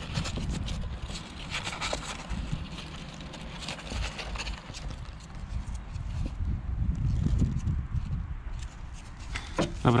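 Wind rumbling on the microphone, with scattered light scratches and rustles from young rabbits shifting about in a cardboard box.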